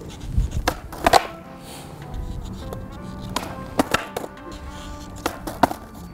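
Skateboard clacking on asphalt during a heelflip attempt: a string of sharp wooden clacks from the tail pop, the deck landing and the board clattering down, irregularly spaced through the few seconds.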